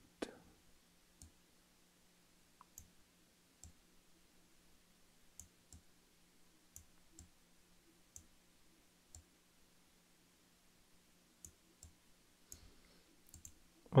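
Computer mouse clicking now and then, a dozen or so scattered single clicks, over a faint steady hum.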